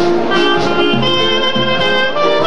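Traditional New Orleans-style jazz band playing live, with clarinet, cornet and trombone together over banjo and drums. It is an instrumental passage with no singing.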